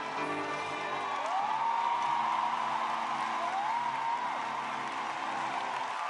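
Orchestra and choir sustaining chords, with the audience cheering over them. Two loud whoops rise out of the crowd, one about a second in and another past the middle.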